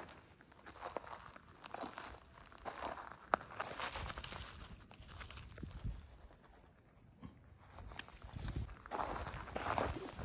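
Slow footsteps crunching on loose roadside gravel, about one step a second, with one sharp click a little over three seconds in. After a quieter stretch, more crunching and scuffing of gravel near the end as stones are picked through by hand.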